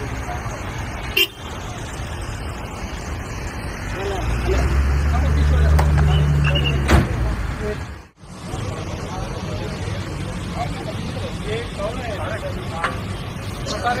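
SUV engines of a slow-moving convoy running outdoors, with people's voices around them; the engine hum of a Toyota Land Cruiser close by swells for a few seconds in the middle. The sound drops out abruptly about eight seconds in and picks up again as engine noise with scattered chatter.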